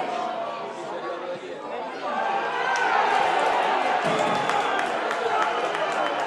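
Television commentator's voice rising to a long, held shout about two seconds in as a goal is scored, over stadium crowd noise.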